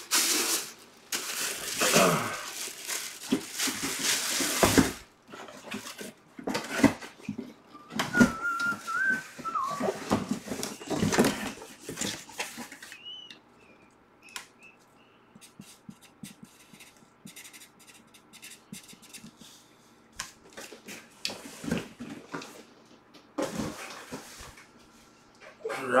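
Plastic wrapping crinkling and rustling as it is handled, loudest in the first five seconds, then scattered lighter rustles and taps of handling. A brief wavering whistle-like tone comes about eight seconds in.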